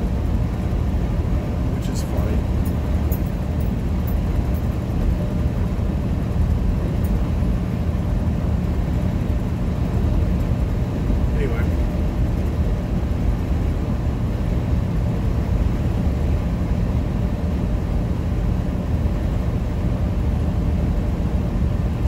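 Steady engine and road noise inside a semi-truck cab at highway speed, heaviest in the low end, with a faint tick or two.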